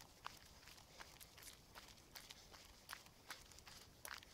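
Faint footsteps on a gravel road: irregular short ticks, a few each second.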